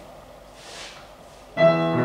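Digital piano: after a quiet stretch, a chord is struck about one and a half seconds in and held, the opening of the song's accompaniment.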